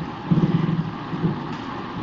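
A pause in a talk carried over an online voice-chat connection: steady line hiss, with a brief low voiced hum in the first second.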